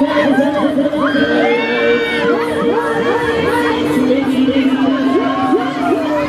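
Riders on a Fabbri Kamikaze 3 swinging-arm fairground ride screaming and shouting, many overlapping high yells that rise and fall, over a steady low hum.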